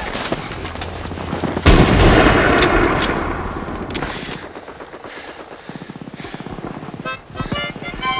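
Battle sound effects: rifle and machine-gun fire, with a loud blast about a second and a half in that dies away over the next couple of seconds. The shooting then thins out, and near the end a harmonica tune begins.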